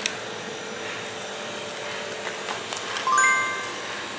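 A single bright chime rings out about three seconds in and fades quickly, over a steady room hum and a few light clicks of a paperboard box being handled.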